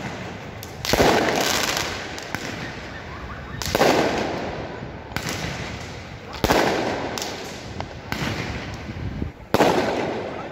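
Aerial fireworks bursting overhead: four loud bangs, spaced roughly two and a half to three seconds apart, each trailing off over a second or so, with smaller pops in between.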